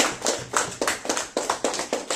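A roomful of people applauding: a dense, irregular patter of many hands clapping.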